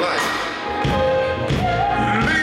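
Live gospel band music: sustained keyboard chords held under the group, with a few heavy, deep thumps, the first a little under a second in and another about a second and a half in.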